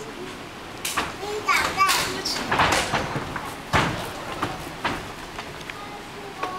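Karate students drilling a continuous sequence of techniques together: a series of short, sharp snaps and thuds from uniforms snapping and bare feet on a wooden floor, with a few brief voices in between.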